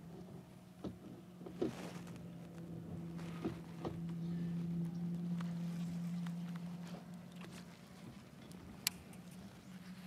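Electric trolling motor on a bass boat humming steadily, louder for a few seconds mid-way, with scattered light clicks and knocks of tackle on the boat and one sharp click near the end.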